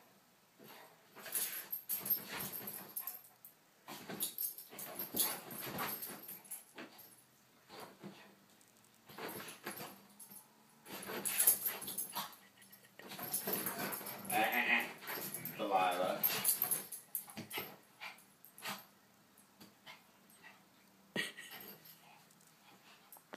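Dogs play-fighting on a couch: repeated short scuffles and rough play noises, with a wavering pitched dog vocalisation about two-thirds of the way through.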